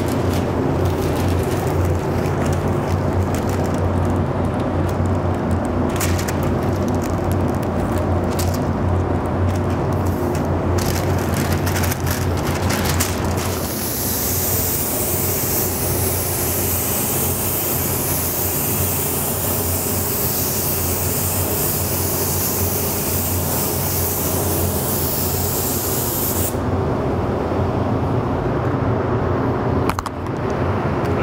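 Paint-booth air system humming steadily, with tape being pulled off the roll and pressed onto the panel during the first half. About halfway through, a gravity-feed HVLP spray gun (Iwata W400) at a reduced air pressure of about 14 PSI hisses for roughly thirteen seconds as it lays the light drop coat of metallic, then cuts off.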